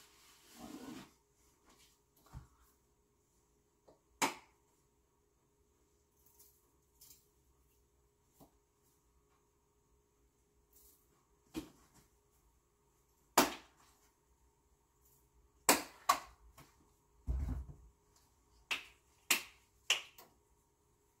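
Scattered sharp clicks and knocks of jars and containers being handled and set down on a kitchen counter, sparse at first and more frequent near the end, with a dull low thump among them.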